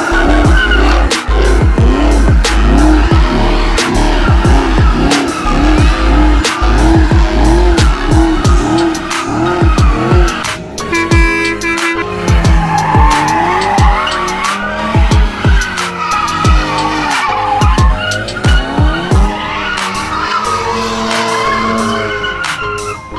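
Cars doing donuts, their tires squealing and skidding under hard throttle, with music with a heavy bass beat playing over them.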